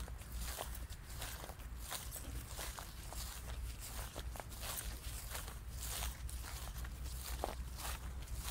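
A person walking through long grass, each step a short swish in a steady walking rhythm, over a low steady rumble.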